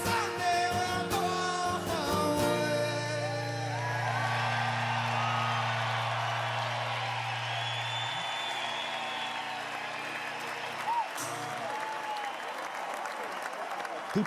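Live male singing with acoustic guitar before a stadium crowd; after a couple of seconds the song settles on a long, steady low note while the crowd cheers and applauds, with scattered whoops near the end.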